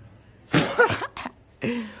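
A man laughing in three short, breathy bursts.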